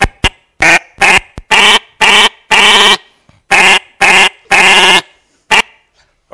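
A short recorded sound sample played over and over at different playback speeds by a ChucK script, so that each repeat sounds at a different pitch and together they make a crude tune: about ten notes, roughly two a second, with a pause in the middle and a few notes held longer. It is loud through the speakers and clipping.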